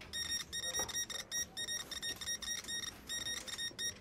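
Background music made of fast, high electronic beeps repeating in a steady rhythm, several a second.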